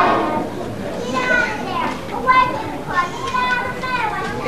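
A crowd of young children chattering, with several high-pitched child voices calling out over the general murmur.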